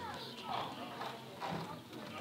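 Faint street ambience: a few footsteps on hard pavement about half a second apart, with distant voices.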